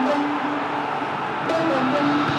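Stadium crowd noise as a steady even din, under a quiet backing music line of held notes.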